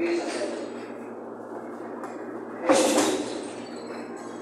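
Indistinct voices and room noise, with one short, loud, breathy burst about three seconds in.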